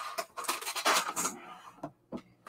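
Small items being handled and set down on a tabletop, including a plastic bag of binder clips: a few short rustling, scraping sounds in the first second or so, then fainter handling.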